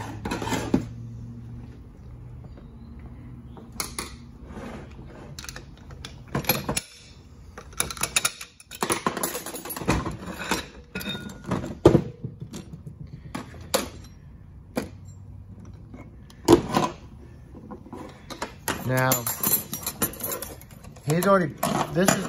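Metal automatic-transmission parts clinking and knocking as clutch drums and a stack of steel and friction clutch plates are lifted, handled and set down on a metal workbench, in a string of separate sharp knocks.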